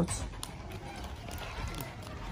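A pause in a woman's talk: low, steady room noise with a few faint clicks, just after the last syllable of her speech at the very start.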